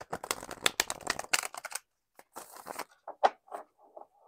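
Tarot cards being riffle-shuffled: a fast run of card clicks for nearly two seconds, then a shorter rustle and a few light taps as the deck is squared.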